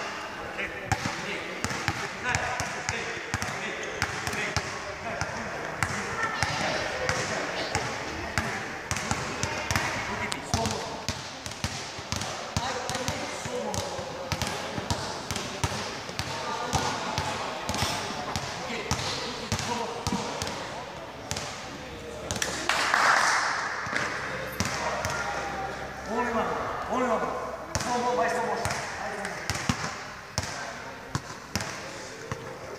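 Basketballs bouncing again and again on an indoor sports-hall floor during dribbling drills, with voices talking in the background. About 23 seconds in, a brief burst of noise is the loudest sound.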